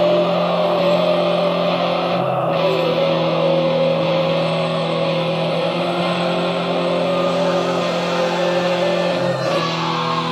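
Black/thrash metal track: distorted guitars holding long, steady notes over shifting low chords, with brief breaks about two seconds in and near the end.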